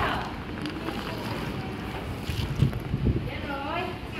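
Low rumbling handling and wind noise on a phone's microphone as it is moved about, with two louder bumps near the end and voices in the background.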